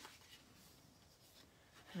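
Near silence with a faint rubbing of white cardstock being folded and creased by hand.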